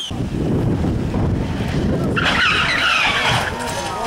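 Peugeot 106 rally car engine revving hard through a hairpin, with the tyres squealing for about a second midway.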